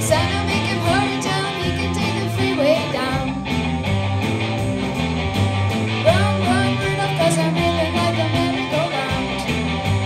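Live rock band: a girl singing into a microphone over electric guitar, bass guitar and a Tama drum kit, her voice coming in two phrases.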